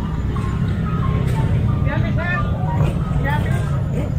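Busy street ambience: a steady low rumble of traffic, people talking in the background, and a simple tune of short held notes playing over it.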